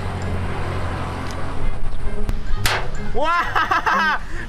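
A homemade rubber-band slingshot is fired once: a faint click, then a single short, sharp swish about two and a half seconds in as the twig shot flies at the corrugated-metal target. Background music runs underneath.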